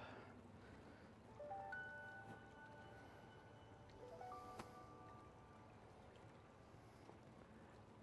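Faint, soft background music: a few bell-like notes held and overlapping, entering about one and a half seconds in and again about four seconds in, with a single click just after the second group. Otherwise near silence.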